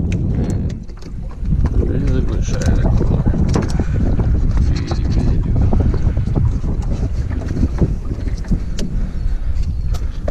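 Wind rumbling on the microphone, with scattered knocks and clatter as a plastic bucket lid is lifted and a white bass is put in among the others.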